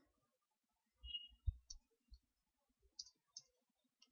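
Near silence with a few faint, separate clicks and soft low bumps from someone working at a computer.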